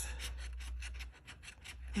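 Metal bottle opener scraping the latex coating off a paper scratch-off lottery ticket in quick, rapid strokes, a dry rasping scratch. The strokes thin out a little past halfway and pick up again near the end.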